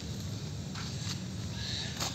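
Steady low outdoor background rumble with a couple of faint light clicks.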